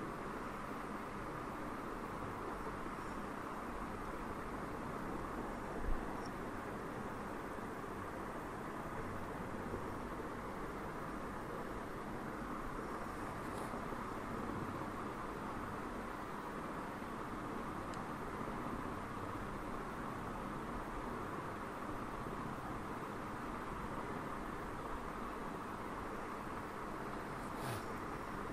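Steady hiss with a faint hum: the room and microphone background noise, with one soft low thump about six seconds in.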